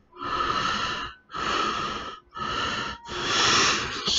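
A man breathing heavily close to the microphone: four long, airy breaths in and out, each about a second, with short pauses between them.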